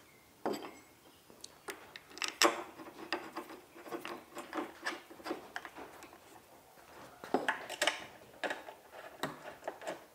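Aluminum machine parts being assembled by hand on a workbench: a string of irregular light knocks, scrapes and metallic clinks as plates are set in place and screws are turned with a hex key.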